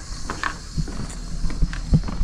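Footsteps on a brick-paver patio, a run of dull thumps, with small clicks from a carried plastic bucket and gear.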